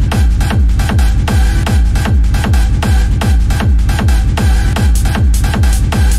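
Hard techno at 155 BPM: a loud, distorted kick drum pounding about two and a half times a second, each kick falling in pitch, under a steady synth layer.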